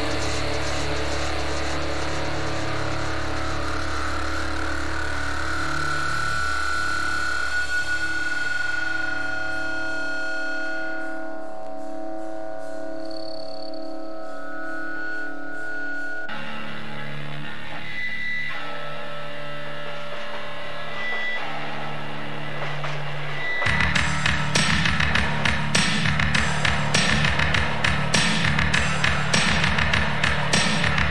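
Band music: held, droning tones with guitar over a deep bass note, changing abruptly about halfway through. A steady drum beat comes in near the end.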